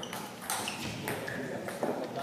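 Table tennis ball being struck by paddles and bouncing: a handful of sharp pings and clicks spaced roughly half a second apart, some with a brief ringing tone, as a doubles rally ends.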